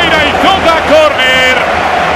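A male football commentator speaking in Spanish over steady stadium crowd noise.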